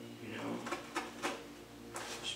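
Craft knife cutting through paper laid on cardboard: a few short, sharp scratches and clicks as the blade works along a letter's edge, over steady background tones.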